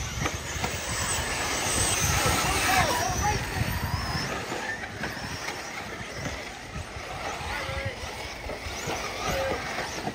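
Several nitro-powered RC truggies racing on a dirt track, their small glow engines buzzing with a pitch that rises and falls as they accelerate and brake.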